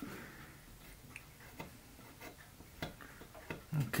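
A few faint, scattered clicks and light knocks from wooden parts being handled: a wooden peg being adjusted in its glued hole in a wooden strip.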